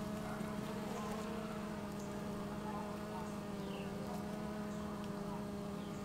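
Honeybee colony humming steadily in the hive, one even drone at a fixed pitch. A faint bird chirp about halfway through.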